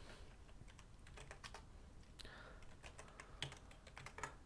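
Faint typing on a computer keyboard: irregular key clicks as a line of code is entered.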